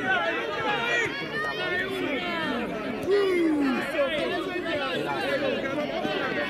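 Several voices of players and onlookers calling out and chattering over one another at an amateur football game, with no clear words; one longer call falls in pitch about three seconds in.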